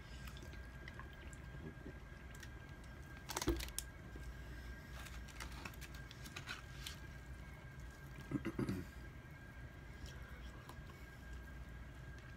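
Faint gulping and swallowing as water is drunk from a plastic bottle, with a sharp knock about three and a half seconds in, then soft tearing and chewing as rotisserie chicken is pulled apart and eaten.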